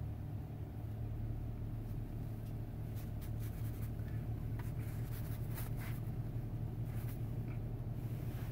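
Bristles of a Chinese wrist brush scratching across rice paper in short strokes, coming more often from about three seconds in, over a steady low hum.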